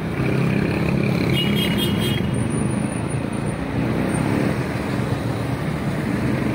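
Street traffic: a steady engine rumble, with motorcycles and motorized tricycles passing. About a second and a half in there is a brief high-pitched tone.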